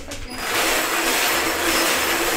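Wire bingo cage spinning, its numbered balls tumbling and rattling against the wire in a steady, dense clatter that starts about half a second in.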